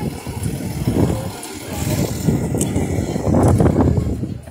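A bus engine running close by, a low rumble that grows louder near the end.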